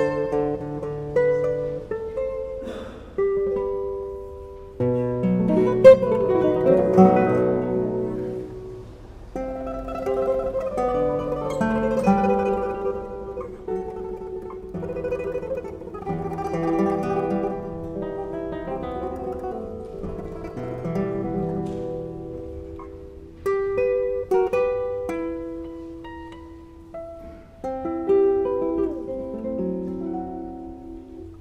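Classical guitar trio playing an instrumental piece: plucked nylon-string notes in several interwoven parts, with short breaths between phrases.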